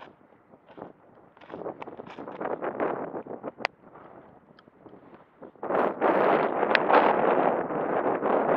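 Wind buffeting the microphone in gusts: a rushing noise that swells and fades in the first half, then comes on strongly for the last two seconds or so, with a single sharp click a little past the middle.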